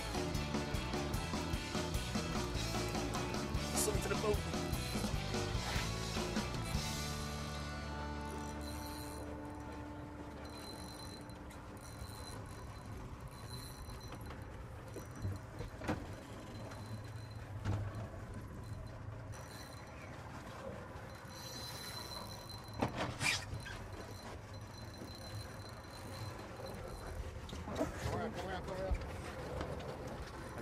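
Background music that fades out over the first eight or nine seconds, leaving a boat's outboard idling as a low steady hum, with a few short sharp clicks.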